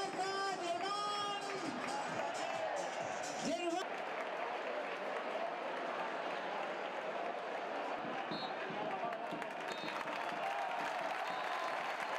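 Football stadium crowd: voices carry over the crowd at the start, then a steady wash of crowd noise and cheering from about four seconds in as the home side scores.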